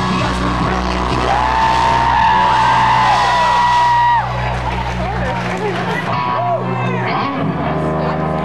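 Live rock band letting a song ring out: a sustained held chord with a long high held note that cuts off suddenly about four seconds in. The low end drops out soon after, leaving a crowd yelling and cheering.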